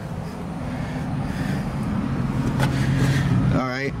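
A motor vehicle engine running with a steady low hum that grows gradually louder.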